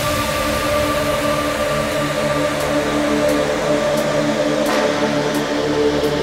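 Electronic dance music in a breakdown: sustained synthesizer chords hold without a drum beat, and faint high ticks come in about every two-thirds of a second from about halfway through.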